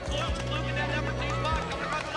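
Background music with sustained low notes and a few low drum thumps, under many overlapping voices of a crowd shouting and cheering.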